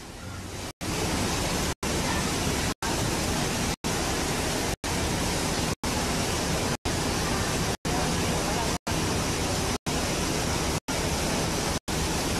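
Steady rushing noise of water pouring around a bowl water slide, cut by short silent gaps about once a second.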